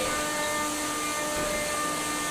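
Combat robots' electric motors running, with a spinning weapon giving a steady, even-pitched whine over a hiss of arena noise.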